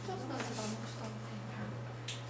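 Faint, indistinct talking in the background over a steady low hum.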